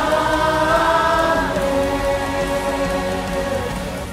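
A large mixed choir of adults and children singing long held notes of the song's closing chord. The chord gradually fades near the end.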